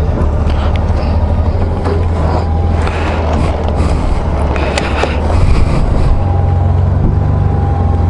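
Honda Gold Wing motorcycle engine idling at a standstill, a steady low hum, with a few light clicks about five seconds in and the sound growing a little louder after that.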